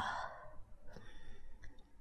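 A soft breathy exhale, like a sigh, fading out within about half a second, then a quiet pause with a few faint clicks.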